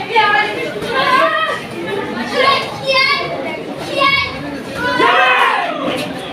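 Children's voices shouting and calling out without clear words: short high-pitched shouts about a second apart, the last one longer and falling in pitch.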